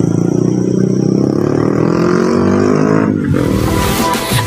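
A motor vehicle's engine, most likely a motorbike, passing close by, its pitch falling steadily as it goes. It cuts off abruptly about three seconds in and gives way to a hissing whoosh.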